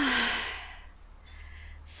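A woman's sigh: a breathy exhale that is voiced at the start and fades away over about a second, followed by a short, quieter breath.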